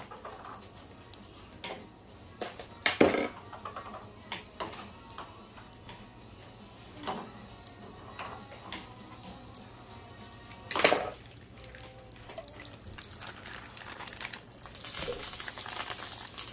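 Quiet kitchen with a steady low hum, broken by two sharp knocks, about three seconds in and about eleven seconds in, and a few lighter ticks. Near the end a hissy rustle starts as a plastic bag of ground beef is handled over the skillet.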